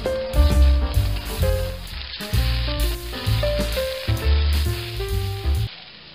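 Eggs sizzling as they fry in a wok while being stirred with a wooden spatula, under background music with a bass line that stops near the end.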